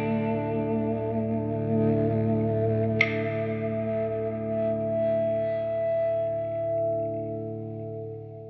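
Electric guitar chord ringing out and slowly dying away, with one sharp high note picked about three seconds in that rings over it.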